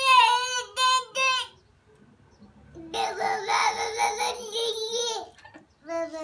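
Toddler's high-pitched, sing-song vocalising: a few short "da"-like calls, then after a short pause one long drawn-out note.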